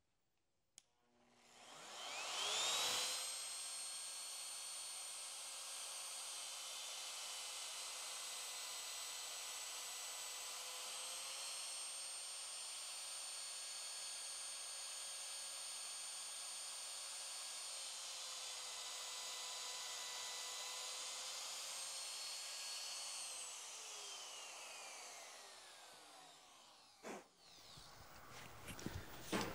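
Shaper Origin handheld CNC router's spindle spinning up with a rising whine about two seconds in, then running steadily at a high pitch while its bit cuts a slot in a wood panel. Near the end it winds down with a falling whine.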